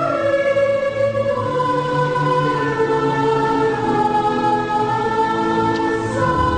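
Music with a choir singing long held notes that move slowly from chord to chord; a new chord with a deeper bass comes in at the very end.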